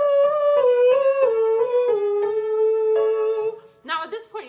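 A woman singing a vocal exercise in head voice: a sustained vowel stepping down a scale of about five notes, the last note held before she stops near the end, with piano accompaniment.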